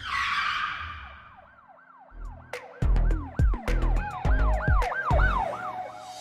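Intro sting for the channel's logo: a whoosh that falls and fades, then a siren-like wail whose pitch swoops up and down about three times a second. Heavy bass hits join it about two seconds in.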